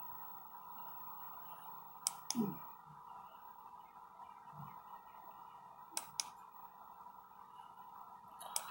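Quiet room with a steady hum, broken by two quick pairs of computer mouse clicks, about two and six seconds in.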